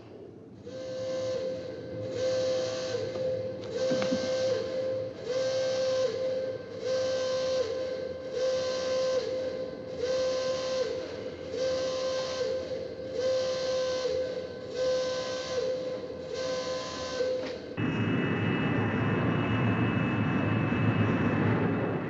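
Pulsing alarm horn sounding over and over, about one blast every second and a quarter: the base alert for condition red. About 18 seconds in it gives way to the steady roar and high whine of jet engines heard from aboard a B-52 bomber.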